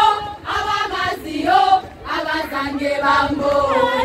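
A group of young women singing together in unison, in sung phrases with short breaks between them.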